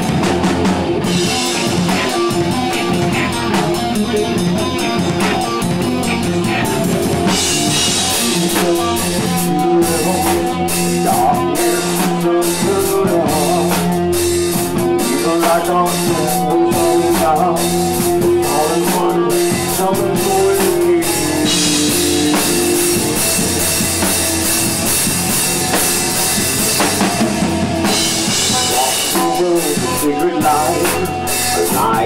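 Live rock band playing: drum kit with cymbals, electric guitar and keyboards over long held notes, the cymbals growing busier about seven seconds in.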